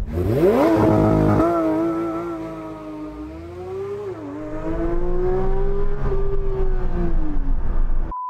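Porsche 911 GT3 RS's naturally aspirated flat-six revving up sharply on a launch-control start and pulling hard under full acceleration, with one upshift dropping the revs about four seconds in. The engine note climbs again after the shift and falls away near the end as the driver lifts off.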